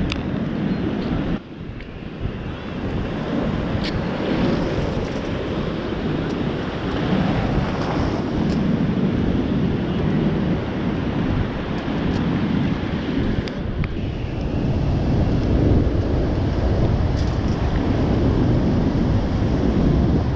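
Wind buffeting the microphone over breaking ocean surf, a steady rushing noise that drops off briefly about a second and a half in.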